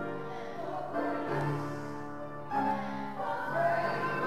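Small church choir of mixed men's and women's voices singing slowly, holding long notes that change about every second.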